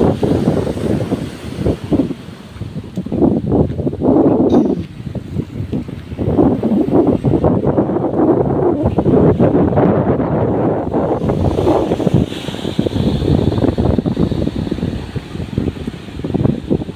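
Wind buffeting the microphone in loud, uneven gusts, with waves washing on the beach beneath it.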